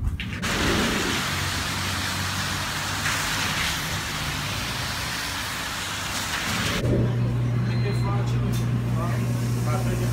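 Steady hiss of outdoor street traffic with a low hum under it. About seven seconds in, it cuts abruptly to a loud, steady low hum from the deli's refrigerated display counter, with faint voices behind it.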